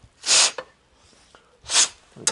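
Two short, sharp breaths through the nose from a man at work, about a second and a half apart.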